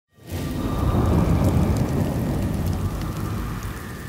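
Deep rolling rumble like thunder, used as an intro sound effect. It swells in during the first half-second and slowly fades away towards the end, with a faint steady high tone over it.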